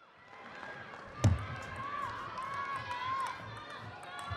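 Table tennis play: a loud thump about a second in, then the sharp clicks of the celluloid-type ball striking bats and table in a rally, with voices in the hall behind.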